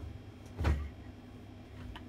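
Low steady hum from idling guitar amplifiers, with one brief soft thump a little under a second in.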